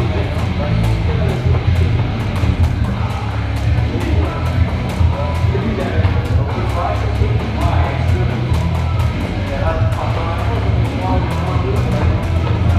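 Loud rock music with guitar and a steady beat.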